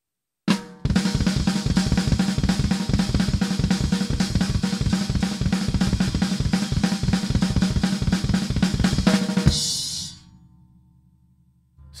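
Drum kit playing a fill: a steady double-bass-drum stream under hand strokes on the snare and China cymbal, opening with a single hit. It runs about nine seconds, then stops and the cymbals ring out and fade.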